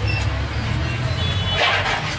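Steady low rumble of street traffic and engines running nearby, with a short slurp as soup is sucked from a spoon near the end.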